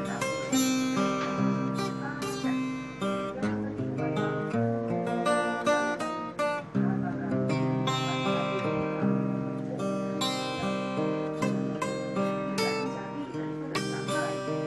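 Acoustic guitar strummed and picked, a steady run of chords with each stroke ringing on.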